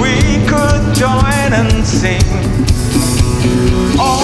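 Live band playing an instrumental passage between sung lines: a drum kit with cymbals keeping a steady beat under bass, guitars and keyboard, with a wavering lead melody on top.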